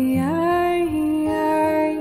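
Slow, gentle devotional chant music: a woman's voice sings long held notes, one sliding up and held, over soft low accompaniment.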